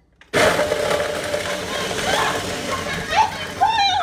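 Kitchen tap turned on hard, water rushing loudly into the sink, starting suddenly a moment in. Near the end a voice cries out over it.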